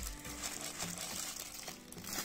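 Plastic wrapping crinkling and rustling as it is handled.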